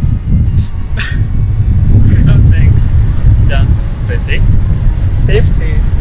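Wind buffeting the microphone: a loud, fluctuating low rumble, with short snatches of voices over it.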